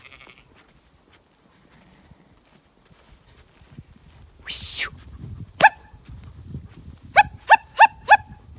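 A small sheepdog barking as it drives sheep: one sharp yap about five and a half seconds in, then four quick yaps in a row near the end. A short hissing noise comes just before the first yap.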